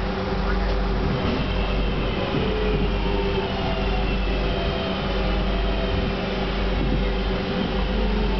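Interior running noise of a Class 323 electric multiple unit slowing into a station: a steady rumble with a traction-motor whine that falls gently in pitch as the train decelerates.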